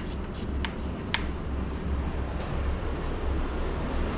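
Chalk writing on a chalkboard: a couple of short sharp taps and scratches in the first second or so, then only a low steady room hum.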